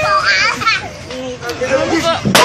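Excited, high-pitched voices of bystanders, children among them, shouting and chattering.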